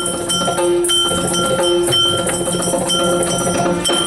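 Yakshagana instrumental accompaniment without singing: maddale drum strokes in a steady rhythm, with ringing hand cymbals and jingling bells over them.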